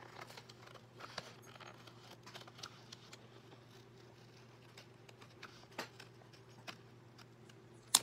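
Scissors snipping through several layers of painted book pages at once, faint and intermittent, with a sharp click near the end. A steady low hum runs underneath.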